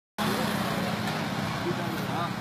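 Road traffic on a bridge: passing vehicle engines, including motorcycles, make a steady hum over road noise, with voices faintly in the background.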